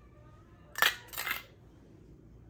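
A metal spoon clinking twice against metal cookware, two short sharp clinks about half a second apart, the second a little longer and scraping, as ghee is spooned onto biryani rice.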